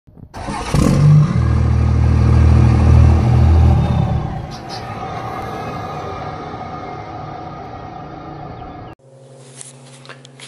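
Loud engine sound in an intro effect, held steady for about three seconds, then a long fading tail that cuts off suddenly about a second before the end.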